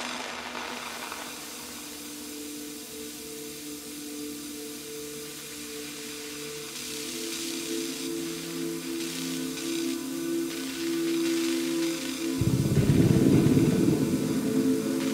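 Modular synthesizer playing layered held drone tones, one of them pulsing, over a faint hiss. About twelve seconds in, a loud, thick noisy low layer comes in and becomes the loudest sound.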